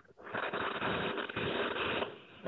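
Heavy rain picked up by a participant's video-call microphone: a steady hiss that starts just after a brief dropout.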